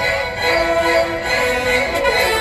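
Symphony orchestra playing long held notes, with a lower line stepping down in pitch.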